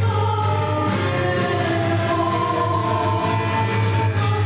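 Live chamber ensemble playing: flute carrying the melody over guitar and cello, with a woman singing into a microphone.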